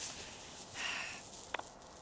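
Quiet outdoor sounds: a brief hiss at the start, a soft breath or sniff about a second in, and one short faint click near the end.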